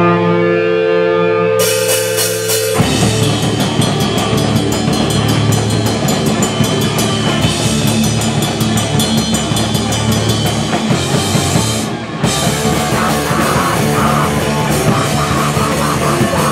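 Live crust punk band with distorted electric guitars, bass and drum kit. A held, ringing chord opens, then cymbals enter. About three seconds in the full band comes in with fast, dense drumming and crashing cymbals, which break off briefly near twelve seconds before carrying on.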